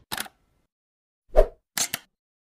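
Sound effects of an animated logo intro: a brief tick at the start, a single pop about a second and a half in, the loudest of them, then two quick ticks just before the end, with silence between.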